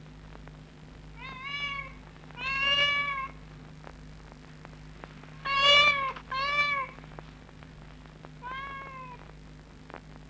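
A cat meowing five times. Each meow lasts about half a second to a second and rises and falls slightly in pitch, with the two loudest close together near the middle. A steady low hum runs underneath.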